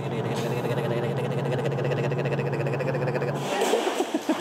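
Car engine and road noise heard inside a moving car's cabin, a steady low hum that cuts off suddenly about three and a half seconds in.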